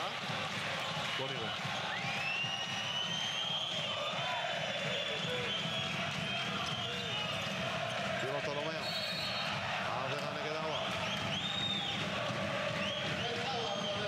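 Basketball being dribbled on a hardwood court with sneakers squeaking, over the steady din of a packed arena crowd.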